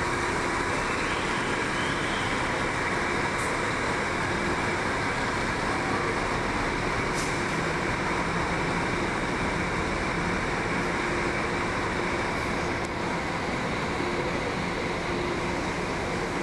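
Intercity coach's engine running as the bus pulls out of its bay and drives off, heard as a steady, even vehicle noise over the terminal's traffic.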